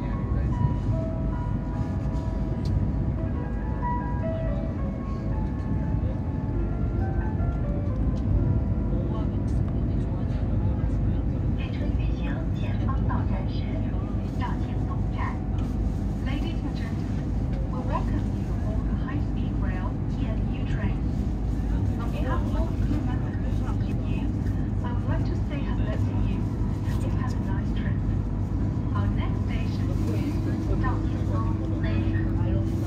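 Steady low rumble inside the passenger cabin of a CRH380A high-speed train at speed, with faint whining tones over the first several seconds. Indistinct voices in the background.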